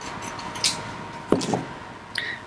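Scissors cutting aluminium foil tape, a crisp snip and crinkle of the foil, followed about a second and a half in by a pair of knocks as the tape roll is set down on the table.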